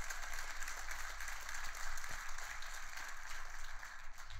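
Quiet, steady applause from an audience, a dense patter of many hands clapping.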